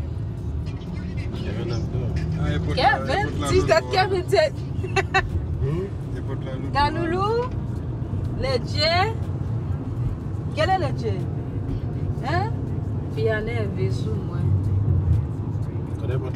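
Steady low road and engine rumble inside a moving car's cabin, with a voice over it in short phrases every second or two.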